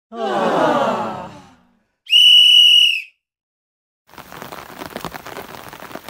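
Intro sound effects: a pitched, wavering sound lasting about a second and a half, then a loud steady whistle tone for about a second. About four seconds in, after a short silence, a steady hiss of rain begins.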